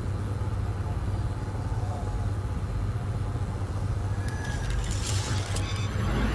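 A low, steady sci-fi rumbling drone from an animated show's soundtrack, with a sparkling high crackle joining in near the end.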